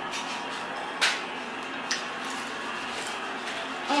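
Abalone slices frying in hot olive oil: a steady sizzle, with a sharp pop about a second in and a smaller one near two seconds.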